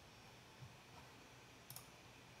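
Near silence: room tone, with a faint quick double click of a computer mouse about three-quarters of the way through.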